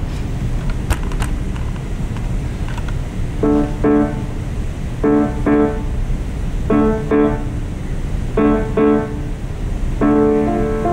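Grand piano playing pairs of short, detached chords, four pairs evenly spaced, starting about three seconds in. Before the first chord there is only low background noise with a few scattered clicks.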